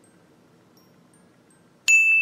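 Faint background, then a single bright ding strikes near the end and rings on as one steady high tone: a chime sound effect.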